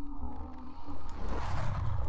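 Dark intro of a metal music video: a low rumbling drone with a steady held tone, and a hissing swell that builds and peaks about one and a half seconds in.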